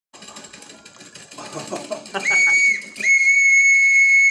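Audio-drama sound effects: a clattering, rattling background, then a railway conductor's whistle blown twice in one steady high tone, a short blast about two seconds in and a longer one from about three seconds in.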